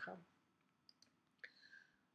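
Near silence, with two faint computer-mouse clicks about a second in as the next slide is selected, and a faint short high tone just after.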